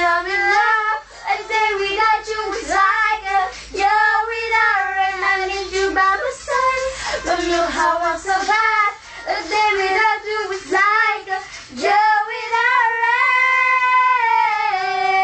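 Two girls singing a pop song, the voice sliding through melismatic runs with few clear words and ending in a long held note.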